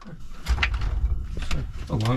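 Soy strips tipped from a plastic bag into a frying pan of oil that is not yet hot: plastic crinkling and a couple of sharp knocks, about half a second and a second and a half in, over a low rumble.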